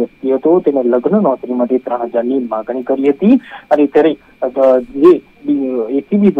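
Speech only: a news narrator talking without pause, in a voice with a radio-like quality, over a faint steady high tone.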